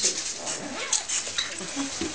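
Indistinct, short voice sounds with brief sliding pitches over a crackly background.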